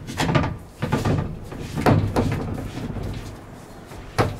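Plastic filter sump being screwed by hand onto its housing head, making several short scraping, rubbing sounds in the first couple of seconds that then die down.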